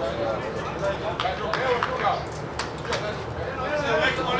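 Men's voices talking and calling across an amateur football ground, with about six sharp clicks near the middle, in two quick runs of three.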